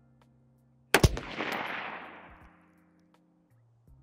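A single 5.56 rifle shot from an AR-15-style rifle, firing a 77-grain open tip match load: a sharp crack about a second in, followed by a rolling echo that fades over about a second and a half.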